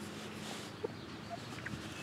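Quiet outdoor background hiss with a soft tick a little under a second in and a few fainter ticks later.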